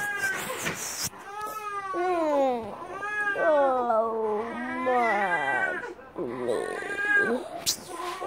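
Long, wavering cries, about five in a row, each one rising and falling in pitch.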